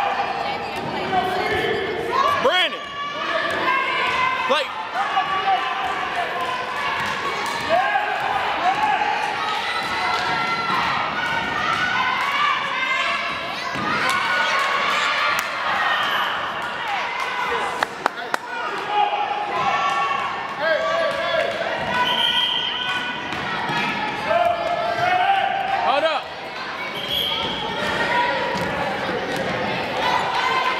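Basketballs bouncing on a hardwood gym floor, with scattered thuds amid voices calling out, all echoing in a large gym.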